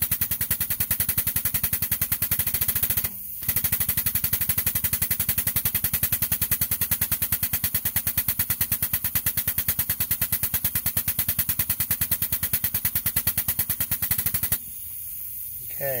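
Air-powered pneumatic grease gun pumping grease through the zerk fitting into a trailer wheel hub to repack the bearings: a rapid, even clatter of strokes. It pauses briefly about three seconds in and stops about a second and a half before the end, once the hub is full.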